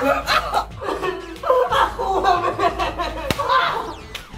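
Indistinct voices and laughter during a scuffle, with a sharp smack.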